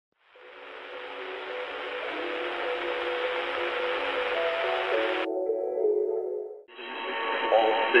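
Intro music over a hiss like radio static, with steady held notes, cutting off sharply about five seconds in, followed by a short run of quieter notes. About six and a half seconds in, the hiss of a shortwave single-sideband radio receiver comes up as the HF broadcast begins, and a voice starts 'All stations' at the very end.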